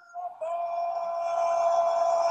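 A long, high sung note, held steady from about half a second in, after a few short rising notes.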